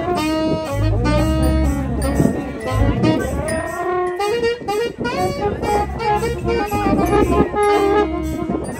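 Small live band playing: saxophone and brass horns carrying the tune over drums and bass.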